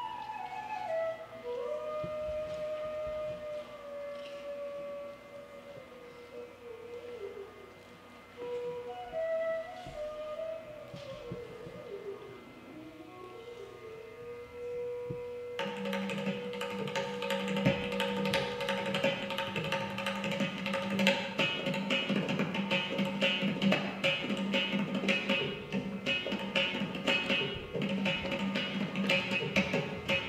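Indian classical music for dance: a solo flute plays a slow, gliding melody, then about halfway through a steady drone and drum rhythm come in and the music grows louder.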